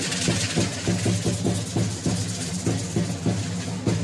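Drum beating a steady dance rhythm of about three strokes a second for a danza of Guadalupe dancers, with a rattling hiss over it that is strongest in the first half.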